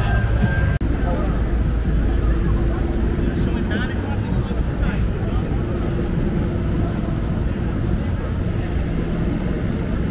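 Busy city street ambience: a steady rumble of traffic with pedestrians' voices mixed in, unintelligible.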